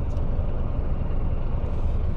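Large truck's diesel engine idling, a steady low rumble heard from inside the cab.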